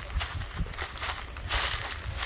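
Footsteps and rustling, irregular short clicks over a low steady rumble.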